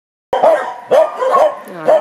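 A dog barking, several short barks about half a second apart starting a moment in.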